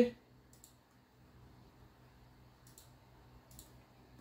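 A few faint, short clicks of a computer mouse, spaced a second or so apart, in a quiet room.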